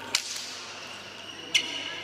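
Badminton rackets striking the shuttlecock twice in a rally: two sharp hits about a second and a half apart.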